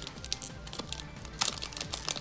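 Foil trading-card booster pack wrapper crinkling in short, irregular crackles as it is pulled open by hand.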